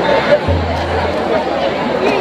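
Crowd chatter: many people talking at once in overlapping voices, with no single clear speaker.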